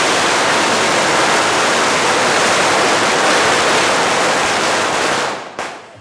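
A long string of firecrackers going off as one dense, loud rushing crackle. It stops suddenly about five seconds in, with one short last burst just after.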